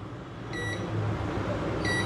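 Digital multimeter beeping twice, short beeps about half a second in and near the end, as its probes touch test points on a phone motherboard while it is checked for a short circuit. A steady low electrical hum runs underneath.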